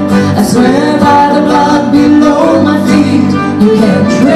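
Live country-folk band: a woman and a man singing together over acoustic guitar and other string instruments.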